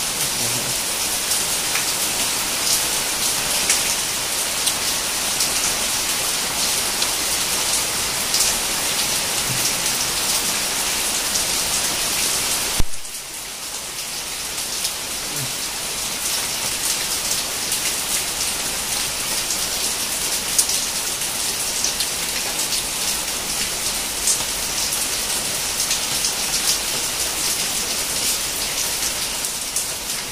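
Steady rain falling, with the patter of many individual drops close by. A single sharp click comes about thirteen seconds in, after which the rain is briefly quieter and then builds back.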